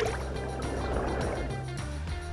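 Background music with a steady low bass, under a swooshing transition sound effect that swells to a peak about halfway through and then fades.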